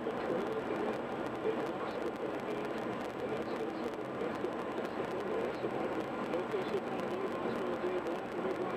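Steady road and tyre noise inside a car cruising at highway speed, with muffled talk underneath, apparently from the car's radio.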